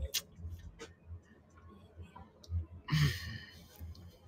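A quiet pause with a few soft clicks, then about three seconds in a short breathy exhale from a person, like a sigh.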